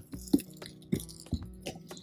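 Cardboard box flaps and a styrofoam liner being handled as a parcel is opened: a few light clicks and scrapes over faint background music.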